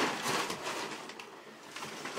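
Plastic packaging wrap rustling and crinkling as it is pulled off a new grand piano, louder in the first second and then fading, with a few sharp crackles near the end.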